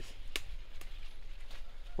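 Tomato leaf stalk snapped off by hand: two short sharp cracks, the louder about a third of a second in.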